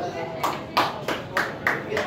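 A few sparse hand claps, about five sharp claps roughly a third of a second apart, over faint voices.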